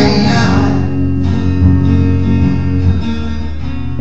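Acoustic guitar in drop C# tuning and hollow-body electric guitar playing together, chords held and ringing. The brighter upper notes fade away about a second in.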